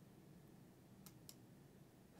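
Near silence, with two faint computer mouse clicks about a second in.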